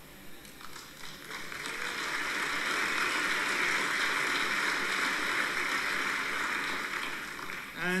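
Audience applauding, building up about a second in, holding steady, and dying away near the end.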